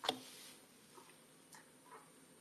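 A short sharp click, then faint room tone with a few soft, scattered ticks.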